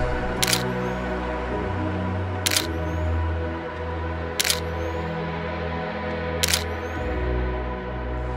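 Background music of sustained tones, with a camera shutter clicking four times, about every two seconds.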